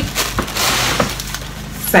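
Gift packaging crinkling and rustling as it is pulled open, with two sharp crackles about half a second and a second in.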